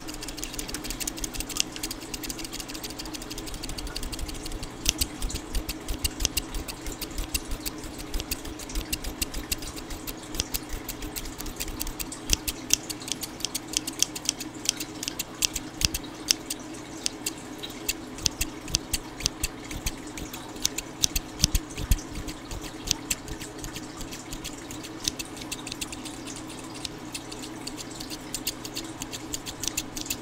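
Small pair of scissors opened and closed right at the microphone: a quick, irregular run of sharp snipping clicks that grows denser from about four seconds in.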